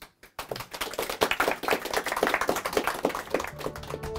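An audience applauding, many hands clapping together, starting about half a second in.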